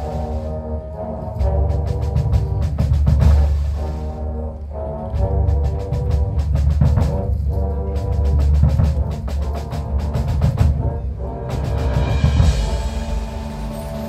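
High school marching band playing its field show: held brass chords over heavy low drums and percussion hits. About twelve seconds in, a brighter, fuller passage comes in.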